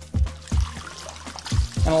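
Background music with a steady bass beat, over water pouring and trickling out of the carpet extractor's recovery-tank drain hose as the tank is emptied.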